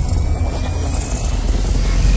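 Cinematic logo-intro sound design: a loud, deep bass rumble with a faint, slowly rising tone above it.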